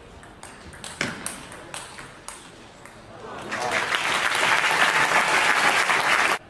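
Table tennis ball knocked back and forth in a fast rally: sharp clicks of ball on racket and table, two or three a second. From about three and a half seconds in, the arena crowd breaks into loud applause and shouting that ends the point.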